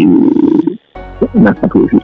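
A loud roar-like animal cry lasting under a second, cut off suddenly. After a brief gap, background music starts with a man speaking over it.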